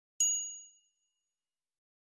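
A single bright ding, a chime sound effect for the logo. It strikes sharply about a fifth of a second in, and its high ringing tones fade out within about a second.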